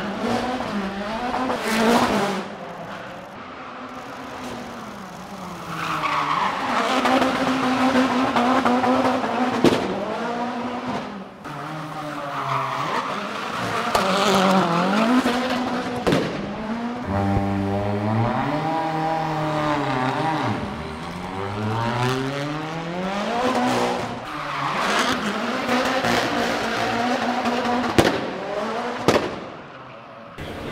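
Ford Focus RS RX rallycross car's turbocharged four-cylinder engine revving hard, its pitch rising and falling again and again, over tyre squeal as it drifts and spins its wheels in a burnout. A few sharp cracks stand out above the engine.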